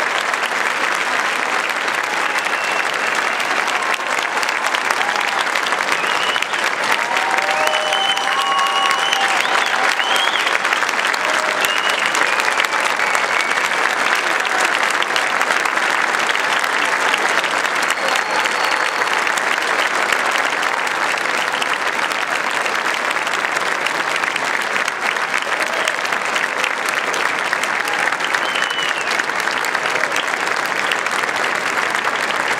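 A large arena crowd applauding steadily in a sustained ovation, dense clapping with scattered whistles and shouts over it.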